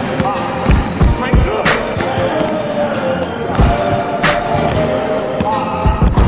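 Basketball being dribbled on a hardwood gym floor, irregular bounces during a ball-handling drill, over background music.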